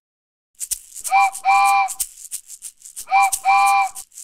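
A shaker rattling in a quick rhythm under a cartoon steam-train whistle that sounds twice, each time a short toot followed by a longer one, starting about half a second in.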